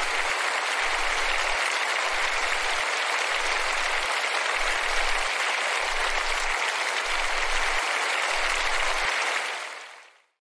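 A crowd applauding steadily, fading out near the end.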